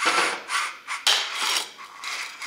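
LESU LT5 metal RC tracked skid steer working as its hydraulic arm lowers the 4-in-1 bucket to the floor: a harsh, hiss-like mechanical noise in about four short bursts.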